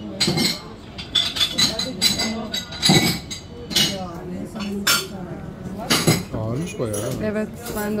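Café bar crockery and cutlery: coffee cups, saucers and spoons clinking in sharp, irregular knocks, with voices chattering behind.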